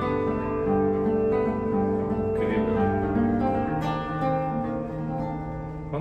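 Yamaha TransAcoustic nylon-string classical guitar played solo: slow chords and picked notes that ring on long and overlap, with its built-in reverb sounding through the guitar's own body. The chords change twice, about halfway through and again a little later, and the playing grows quieter near the end.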